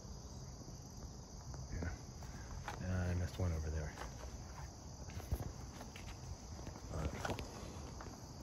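A steady insect chorus, with footsteps and light handling taps as the person holding the camera moves about. A short murmur of voice comes about three seconds in.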